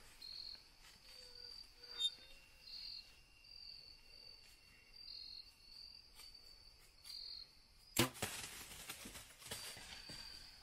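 A compound bow is shot once, about eight seconds in: a single sharp crack at the string's release, the loudest sound, then about two seconds of noisy rustle. Insects chirp throughout in a steady pulsing rhythm, about two bursts a second.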